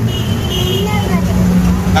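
Motor vehicle engine running with a steady low hum, heard from inside the open rear passenger compartment, with faint voices over it.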